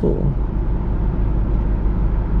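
Steady low rumble of a car's engine and cabin noise, heard from inside the car.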